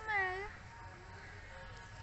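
Baby macaque giving one short, high call at the very start, about half a second long, its pitch dipping and rising again.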